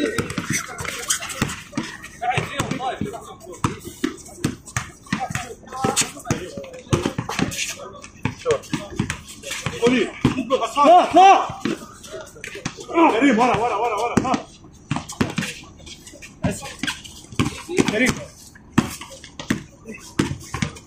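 A basketball bouncing on a hard outdoor court in a repeated series of sharp strikes, with players' voices calling out. The voices are loudest about ten and thirteen seconds in.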